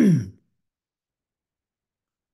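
A man clearing his throat, ending in a short voiced sound that falls in pitch, right at the start; then complete silence.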